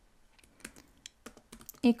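Typing on a computer keyboard: an uneven run of key clicks as a line of code is entered.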